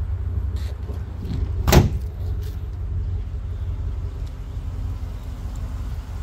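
A single solid slam about two seconds in, fitting a pickup's tailgate being shut, over a steady low rumble.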